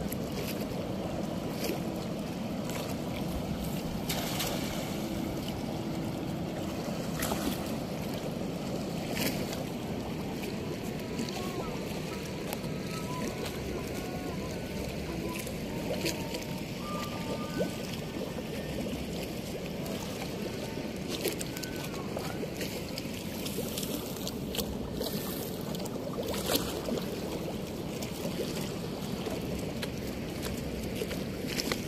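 Steady rush of churning river water flowing out below a weir's gates, with scattered light clicks.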